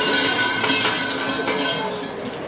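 Large Shinto shrine bell (suzu) shaken by its hanging rope: a loud, bright jangling with several ringing tones, which stops near the end.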